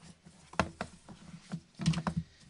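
Cardboard CD album box being opened: the lid is pulled off and the box handled and set down on a wooden table, making a handful of short taps and knocks, the loudest near the end.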